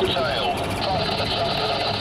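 Vehicles driving at speed, a steady engine and road noise, with a voice over it briefly near the start.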